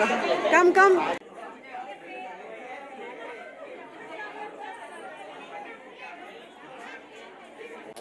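A close voice speaking for about a second, then a sudden cut to the overlapping chatter of many people talking at once, quieter and steady.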